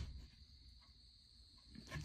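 Near silence: faint room tone with a thin, steady high-pitched tone and a soft click at the very start.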